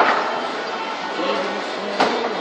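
A single sharp knock of a pool ball, the cue ball rebounding off the table's cushion, right at the start. Voices and music carry on behind it.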